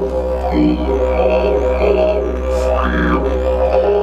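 Didgeridoo playing a steady low drone, its tone swelling and changing colour about three times.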